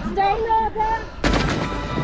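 A man shouting in short bursts, then a sudden loud roar from a crowd of men about a second in, like an army's battle cry.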